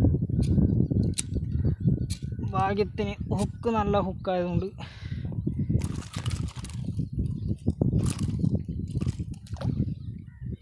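Low rumble from a handheld camera being moved about in a flooded grassy field, with a few sharp knocks in the second half. About two and a half seconds in, a voice gives four or five short, drawn-out calls.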